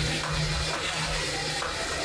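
Action-film soundtrack: a steady rushing noise with a low rumble and a steady low hum underneath.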